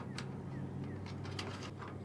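Faint outdoor background: a low steady hum with a bird calling, and a couple of light clicks as the clamp screw of a metal vent cap is turned by hand.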